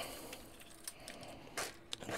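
Faint handling noise of small plastic robot parts: light clicks and rustles, with a short scrape or rattle about one and a half seconds in.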